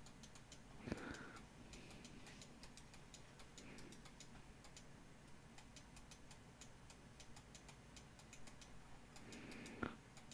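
Near silence with faint, fairly regular light ticking throughout, and a soft click about a second in and another near the end.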